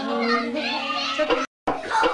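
Voices through a hand-held microphone, with children's voices, cut off by a brief total silence about one and a half seconds in before the sound resumes.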